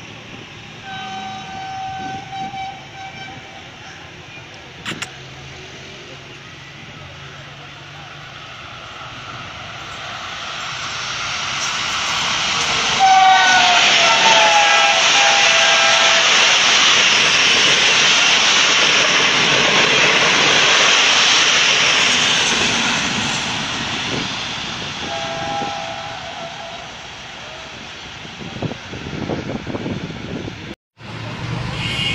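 Pakistan Railways AGE-30 diesel-electric locomotive sounding its multi-note horn as it approaches. About 13 s in, a loud horn blast drops in pitch as the train passes at speed, and the loud noise of the coaches running by follows, then fades. A shorter horn sounds near the end.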